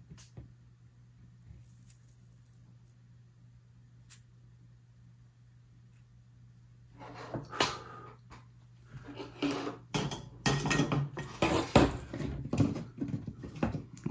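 A faint steady low hum with a few small clicks while a wire joint is soldered. From about seven seconds in, a busy run of clicks, metallic clinks and rustling as the soldering iron is put down and the wires are handled.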